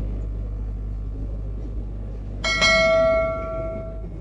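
A bell struck once about two and a half seconds in, ringing out with several steady tones that fade over about a second and a half, over a steady low hum.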